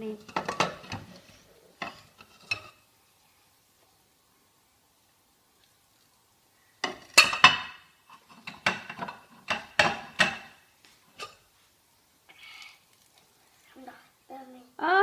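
Ceramic plates and cups clinking and clattering against each other in a kitchen sink as they are washed by hand. The clatter comes in a few bunches of quick knocks with quiet stretches between, and the loudest clatter comes about seven seconds in.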